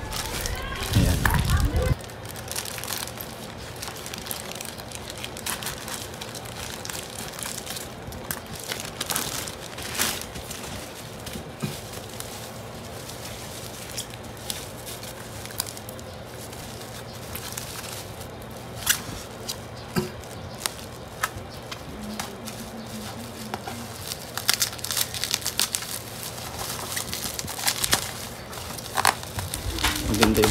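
Plastic courier pouch and bubble wrap being cut open with scissors and handled: irregular crinkling and rustling with many scattered sharp crackles.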